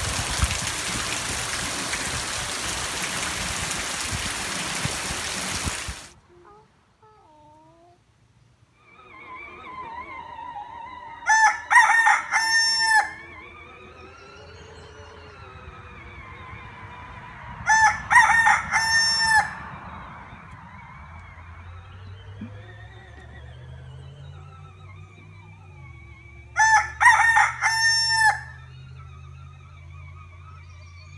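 Heavy rain pouring, cutting off suddenly about six seconds in. Then a rooster crows three times, each crow lasting about a second and a half, several seconds apart, over a fainter background.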